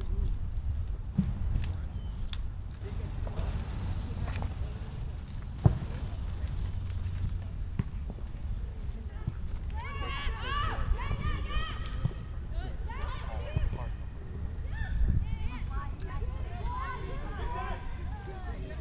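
Distant, high-pitched shouts and calls from players on a soccer field, starting about halfway through and going on in bursts, over a steady low rumble. A single sharp knock comes a little before the shouting starts.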